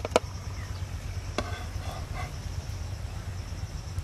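A few sharp metal clicks as a knife and metal tongs tap against a frying pan and a wooden board while toasted bread slices are lifted out: two right at the start, another about a second and a half in. Under them runs a steady low rumble.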